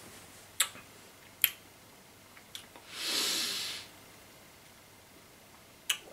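A man tasting a mouthful of stout: two sharp lip smacks about half a second and a second and a half in, then a long breath out lasting about a second, and another smack just before he speaks.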